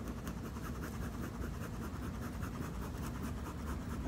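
Bee smoker being worked low over a swarm to drive the bees toward a box: a soft, even run of fast scratchy strokes.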